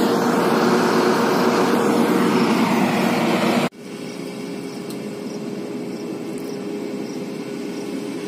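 Rice combine harvester running steadily at close range, a constant engine drone with a steady hum in it. It cuts off abruptly a little past halfway and gives way to a quieter, steady drone of the combine working farther off.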